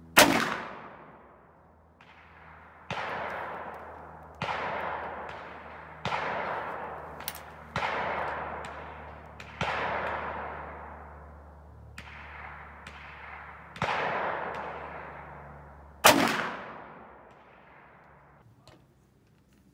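Two shots from a Ruger Super Redhawk .44 Magnum revolver, one right at the start and one about 16 seconds in, each ringing off in a long echo. Between them come six quieter sharp reports, each trailing off over a second or so.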